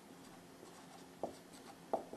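Dry-erase marker writing on a whiteboard, faint, with two short ticks of the marker on the board, about a second in and near the end.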